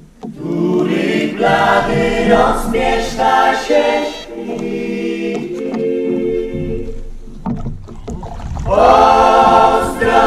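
Choir singing a Polish folk song, several voices in harmony, in long sung phrases. A short break comes at the very start and a louder phrase swells near the end.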